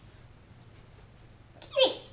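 A dog's plush squeaky toy squeaking once near the end, a short, loud squeak that slides quickly down in pitch as the dog bites it.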